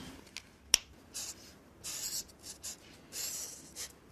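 Felt-tip marker strokes scratching across paper in short, high, rasping bursts. A single sharp click comes about a second in.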